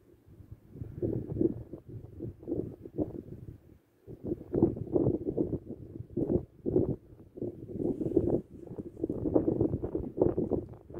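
Wind buffeting a phone microphone: a low, gusty noise that swells and fades unevenly, dropping away briefly about four seconds in.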